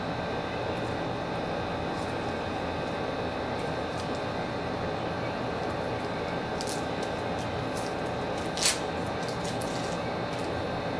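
Steady mechanical room hum, with a few small handling clicks and one brief rustle near the end.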